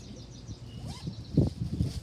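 Paper wrapping crinkling as it is handled and opened, loudest in a short run of crackles about a second and a half in. Faint bird chirps sound in the background.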